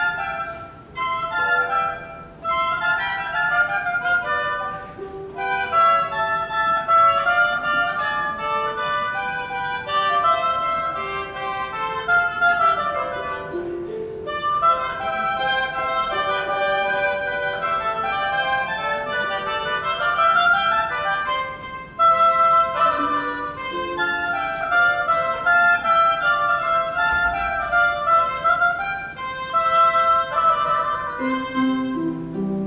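Live chamber trio of two oboes and harp: the two oboes play interweaving melodic lines over the harp, with brief pauses between phrases.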